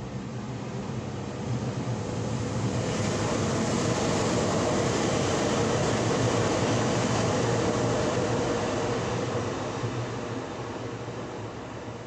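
A vehicle passing by: a steady noise with a low hum that swells over the first few seconds, is loudest around the middle, and fades away toward the end.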